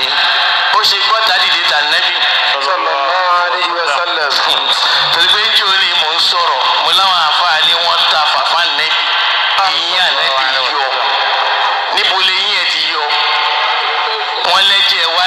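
Continuous speech from one talker, thin and tinny with little bass, like speech heard over a radio.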